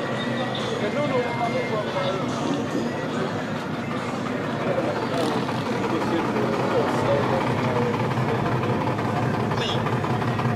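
Indistinct conversation of several people talking at once, over a steady low vehicle rumble.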